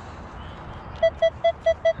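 A metal detector sounding a target signal: five short, quick beeps of one steady tone. The detectorist reads the signal as big junk.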